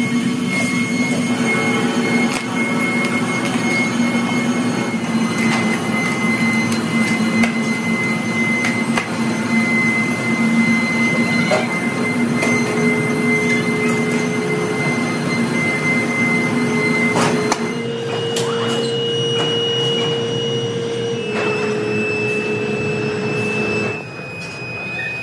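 Steady drone of foundry machinery with a high whine and occasional clicks and knocks. Near the end the whine shifts to a higher pitch and the noise becomes slightly quieter.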